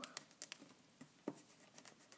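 Pencil working faintly on a paper worksheet on a tabletop: soft scratching with a few light taps.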